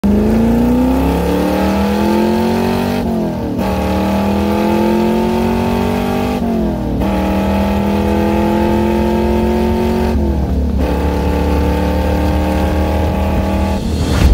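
1969 Chevrolet Corvette C3's V8, fitted with side-mount exhaust pipes, heard from inside the cabin as the car accelerates hard. The engine note rises steadily in each gear, with three brief dips where it shifts up, about 3, 6.5 and 10.5 seconds in.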